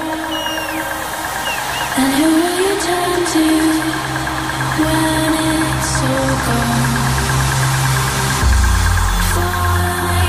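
Electronic dance music from a trance DJ set, with a fast, steady high-pitched pulse and sustained melody lines. A heavy bass comes in about eight and a half seconds in.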